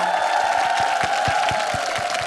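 Studio audience clapping and cheering over a sustained held musical chord, greeting a successful round on a singing game show.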